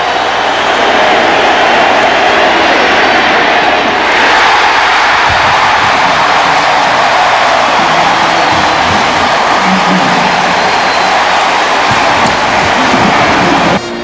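Large stadium crowd cheering loudly and steadily, swelling about four seconds in, after a game-deciding fourth-down stop.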